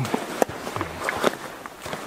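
Footsteps walking over the forest floor, with two sharp clicks.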